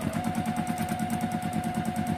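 Juki TL2010Q sewing machine stitching fast during free-motion quilting: a steady motor whine over a rapid, even chatter of needle strokes. The whine steps up slightly in pitch just after the start as the machine picks up speed.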